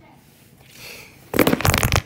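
Loud crackling, rustling handling noise from a phone being grabbed and moved, fingers rubbing over its microphone, starting about a second and a half in.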